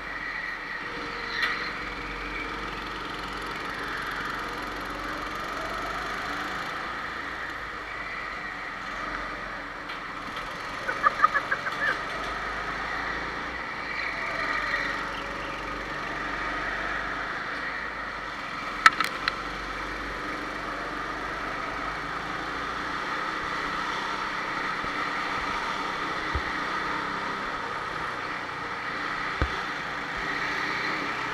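Go-kart engines running during a race, the pitch rising and falling as they rev up and ease off. A few sharp clacks come about eleven and nineteen seconds in.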